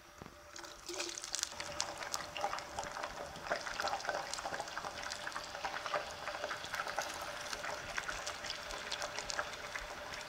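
Potato wedges deep-frying in a pot of hot oil: a dense crackling sizzle that starts about a second in, as the raw wedges go into the oil, and keeps on.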